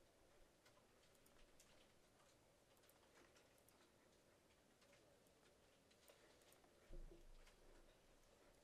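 Near silence: quiet room tone with faint, scattered computer keyboard and mouse clicks, and a low thump about seven seconds in.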